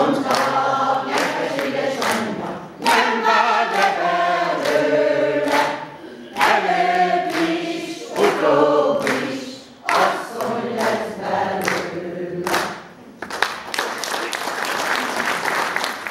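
Women's choir singing unaccompanied in sung phrases with short breaks; the song ends about thirteen seconds in and audience applause follows.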